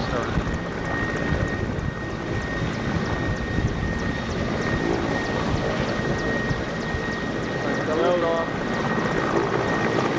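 Mil Mi-8-family transport helicopter running on the ground at full rotor speed: a steady engine and rotor noise with a constant high turbine whine, the aircraft beginning to lift off near the end.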